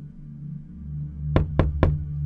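Three quick knocks on a door near the end, about a quarter second apart, over a low steady ambient music drone.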